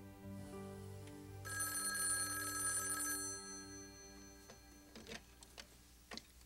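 A telephone rings once, a steady electronic trill of about two seconds, over soft held background music chords that fade away. A few faint clicks follow near the end.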